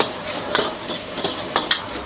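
Rice noodles sizzling in a hot wok while a metal spatula tosses them, scraping and knocking against the wok several times.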